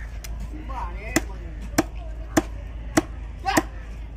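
A heavy cleaver chopping fish on a wooden chopping block. There are five sharp chops, about one every 0.6 s, starting about a second in.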